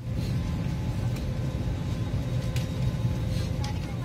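Airliner cabin noise on the ground during boarding: a steady low rumble from the ventilation, with a faint steady whine over it and passengers' voices in the background.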